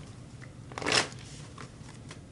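Tarot cards handled in the hand: a short rustle of shuffling card stock about a second in.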